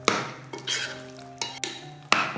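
A metal ladle stirring thick chicken gravy in a cooking pot: three stirring strokes, one near the start, one just under a second in and one near the end.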